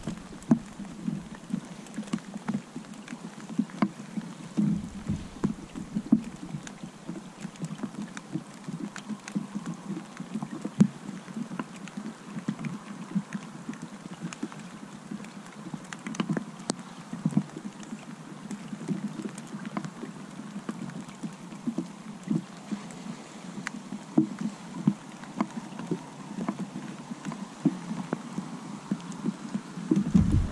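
Rain and wind on the camera's microphone: a steady rushing noise, broken by frequent irregular taps and buffets.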